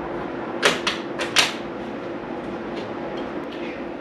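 Strut nuts clicking in a steel Unistrut channel as they are slid into position: four sharp clicks about a second in, over a steady background hum.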